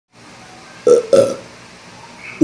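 A young man burping twice in quick succession, about a second in.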